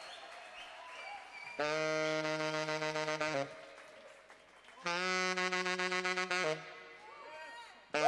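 Tenor saxophone on a PA playing two long held notes, each a little under two seconds, the second slightly higher than the first, with quiet gaps around them.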